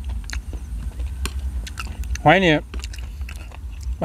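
Close-up chewing of crunchy golden apple snail salad: many sharp crunching clicks scattered through, over a steady low rumble.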